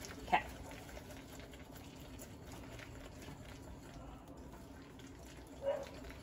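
Wire whisk beating egg yolks and sweetener in a glass batter bowl: faint, uneven wet swishing with small clicks of the whisk against the glass.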